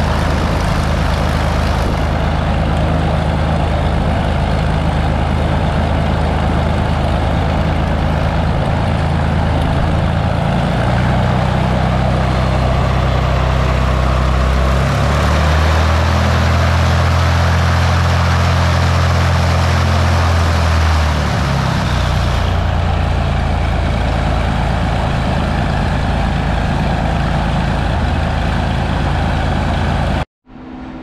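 Lancair Legacy's Continental IO-550 six-cylinder engine and propeller running on the ground at a steady low rpm. The engine note rises about a third of the way in, is held higher and louder for about six seconds, then drops back to the lower speed and runs on steadily. It is running pretty good.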